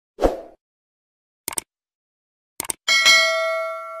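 Subscribe-button animation sound effects: a short pop, two quick double clicks like a mouse button, then a click and a bell ding that rings out for over a second.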